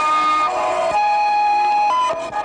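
Experimental electroacoustic sound-poetry piece: layered held tones, siren-like, that jump to a new pitch about every half second over a rough noise bed.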